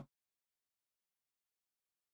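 Silence: the sound track drops to nothing.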